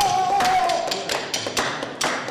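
A male flamenco singer holds one long, high sung note that wavers slightly and breaks off about halfway through, over irregular sharp taps and knocks.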